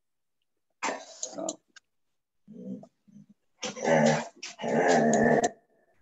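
A dog barking over a video-call microphone, in separate bursts: a short one about a second in, a faint one around the middle, and a longer, louder stretch in the second half.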